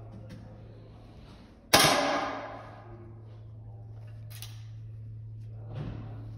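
A single shot from a target rifle about two seconds in, sharp and loud, ringing on briefly in the range hall before dying away.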